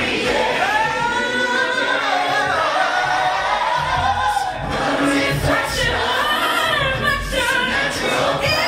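Layered a cappella singing: a woman's lead voice over several stacked vocal parts built up live with a loop pedal.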